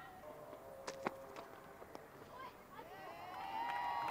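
Faint cricket-ground sound: distant voices, with a couple of sharp knocks about a second in.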